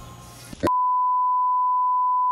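Censor bleep: a steady, high-pitched single-tone beep that starts about two-thirds of a second in, masking a swear word, with all other sound cut out beneath it.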